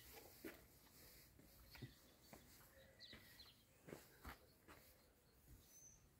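Near silence: faint outdoor quiet broken by scattered soft clicks and a few faint, brief chirps.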